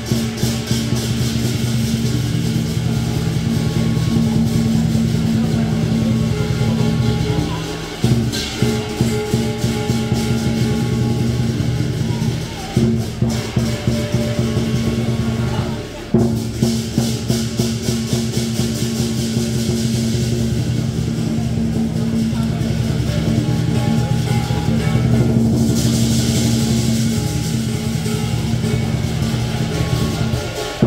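Lion dance percussion: drum, cymbals and gong played continuously to accompany the lion, with brief breaks about 8, 13 and 16 seconds in.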